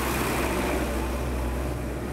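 Road noise heard from a moving vehicle: a loud, steady rush of wind and traffic noise with a deep rumble, passing close alongside a truck.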